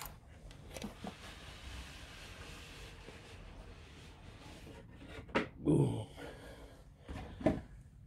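A cardboard outer sleeve slid off a collectible figure's box with a soft scraping hiss, followed by a few knocks and thumps of cardboard packaging being handled and set down, the loudest about five and a half seconds in.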